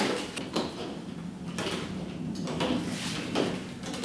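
Irregular knocks, scrapes and rustles of plastic bottles, syringes and tubing being handled on a tabletop, several short bursts spread over a few seconds.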